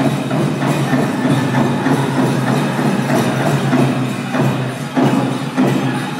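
Powwow drum group singing a chicken dance song, voices over a steady beat on a large powwow drum. Harder drum strikes stand out near the end.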